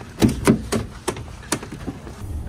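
Lorry cab door being opened and climbed into: a latch click followed by a run of sharp knocks, about five in under two seconds, the loudest near the start.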